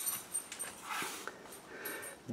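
Thick cardboard page of a board book being turned by hand and laid flat, with a light tap at the start and soft handling rustles.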